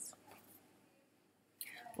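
Mostly quiet room tone with faint handling noise as a picture book is moved away early on, then a breathy intake of breath about a second and a half in, just before speech resumes.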